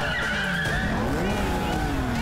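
Motorcycle engines revving in a street race, the pitch sliding down, rising, then sliding down again as bikes pass.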